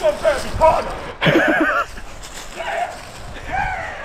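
Men's voices talking and calling out excitedly.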